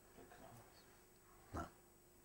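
Near silence: room tone in a pause between spoken phrases, with a brief faint sound about a second and a half in.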